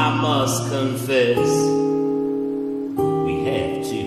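Acoustic guitar strummed between sung lines of a folk song, with chords struck about a second and a half in and again at three seconds and left ringing.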